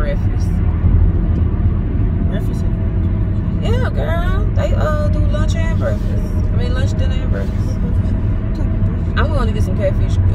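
Steady road and engine rumble heard inside a moving car's cabin, with short stretches of a woman's voice about four seconds in and again near the end.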